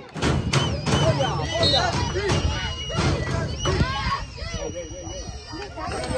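Overlapping shouts and calls of players and spectators at a youth football match, with scattered sharp knocks.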